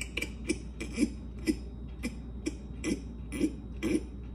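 Liquid chlorophyll drops falling from a glass dropper into a plastic bottle of water, a short plink about twice a second.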